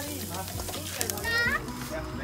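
Background chatter of a group of people talking over one another, with a short high-pitched voice rising sharply in pitch a little past halfway, like a squeal.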